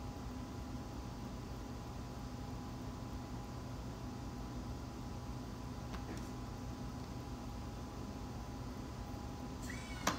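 Steady machine hum with a faint high whine and a faint click about six seconds in. This is the EDAX Si(Li) EDS detector's automatic overload protection retracting the detector after sensing too much X-ray signal (high CPS).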